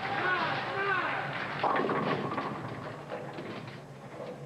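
Tenpin bowling ball hitting the pins about a second and a half in: a short clatter of falling pins that fades away, leaving the 2 pin standing.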